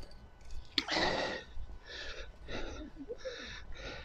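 A person's breathy huffs close to the microphone, short unvoiced bursts coming about once a second, the loudest one about a second in just after a sharp click.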